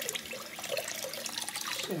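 Bathroom sink faucet running, its stream splashing over hands and a small bristle brush being rinsed in the basin.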